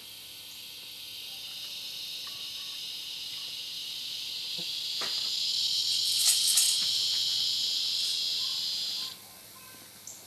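An insect's high, steady buzz that swells gradually over several seconds and stops suddenly near the end, with a few faint knocks partway through.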